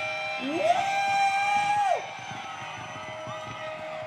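A single voice whoops at the end of a live rock song, sliding up into a high held note for about a second and a half before dropping away. The audience then cheers more quietly under a lingering steady tone from the stage.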